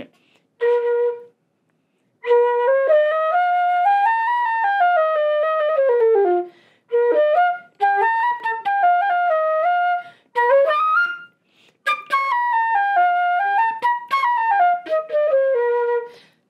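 A Jupiter 700WRE silver-plated student flute played solo: one short held note, then a flowing melody in the low and middle register that rises and falls, played in several phrases with short pauses between them.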